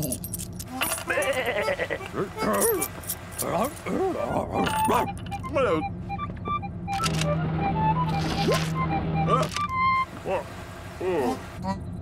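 Coins jingling in a small coin purse as it is rummaged through, in the first couple of seconds and again briefly a few seconds later, amid mumbled cartoon vocalising and background music.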